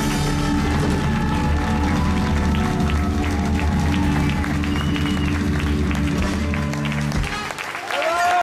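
Live rock band with electric guitars, bass, drum kit and trumpet holding a final chord, with drum and cymbal hits over it and audience applause. The sound dips briefly near the end.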